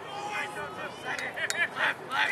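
Quieter background talk from spectators, with a single sharp click about one and a half seconds in.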